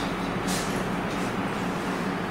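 Steady room noise, a constant hum and hiss, with one short hiss about half a second in.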